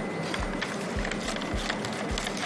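Light clicks and rustles of small tools and packaging being handled on a table, with faint soft knocks, over steady room noise.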